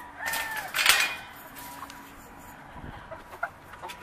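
Game chickens clucking: a short call, then a louder, harsher call about a second in, after which the pen goes quiet.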